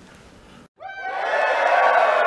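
Quiet room tone, then a moment of dead silence, and a little under a second in, a crowd cheering starts up: many voices together, rising as it begins, then holding loud.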